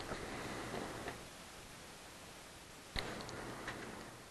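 Faint room noise in a pause between speech, with one sharp click about three seconds in and a fainter one shortly after.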